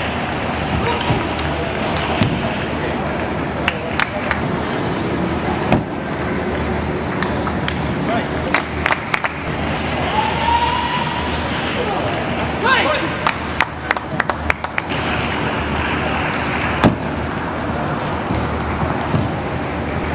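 Table tennis ball clicking sharply off bats and table in quick rallies, heard over a constant murmur of voices in a large hall.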